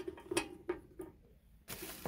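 A few light clicks and taps as a plastic carry handle is handled against a sheet-metal machine case, about three a second at first, then a soft rustle near the end.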